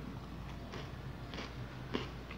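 A crunchy homemade savory biscuit stick being chewed: a few faint, irregular crunches, the sharpest one near the end.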